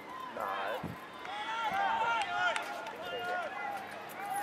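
Several footballers shouting and calling to each other across the ground, high raised voices overlapping, loudest around two seconds in.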